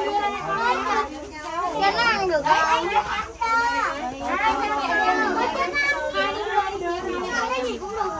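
Children's voices chattering and calling out over one another, several at once, high-pitched and lively.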